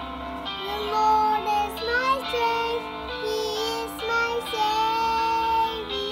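A young girl singing a praise song over a backing track. Her voice comes in about half a second in, with held notes and short slides between them.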